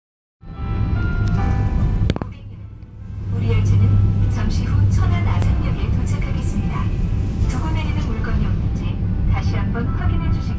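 Onboard passenger announcement on an SRT high-speed train: a short chime opens it, a click follows about two seconds in, and from about three seconds in a recorded Korean voice announces that the train will shortly arrive at Cheonan-Asan station. Underneath runs the steady low rumble of the moving train.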